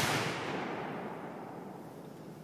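The fading echo and rumble of a 10-gauge black powder blank fired from a small signal cannon. It dies away steadily over about two seconds, the high end fading first.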